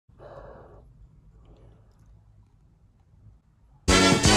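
A person's short breathy sigh, then a faint low hum; loud music starts abruptly near the end.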